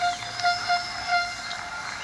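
Ballpark crowd noise heard through a TV's speaker, with a steady horn-like tone held throughout that swells a few times.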